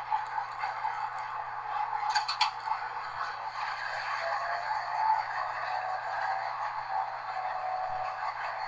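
Running noise of a Class 201 'Hastings' diesel-electric multiple unit heard inside its rear cab: a steady rumble and rattle of wheels on rail, with a cluster of three sharp clicks about two seconds in.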